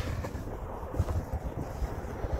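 Wind blowing across the microphone: an uneven low noise, with no other clear sound.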